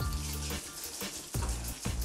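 Water spraying from the handheld shower head of a freestanding bathtub faucet into the tub, under background music with a deep bass line that changes note about every half second.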